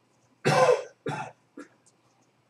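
A person coughing: two loud coughs about half a second apart, then a smaller third one.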